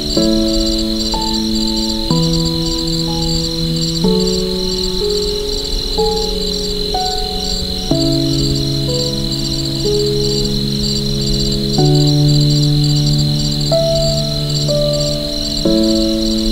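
Soft piano music, slow sustained chords changing about every two seconds, over a steady layer of crickets chirping in quick, even pulses.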